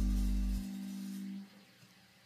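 The last held chord of an electric blues song ringing out. The bass drops away about half a second in, the rest of the chord stops a little before the middle, and near silence follows.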